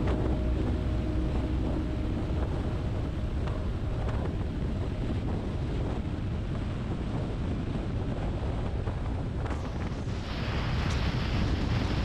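Wind rushing over the microphone of a camera mounted on a moving motorcycle, a steady rumbling roar with road noise beneath it. About ten seconds in the rush turns brighter and hissier.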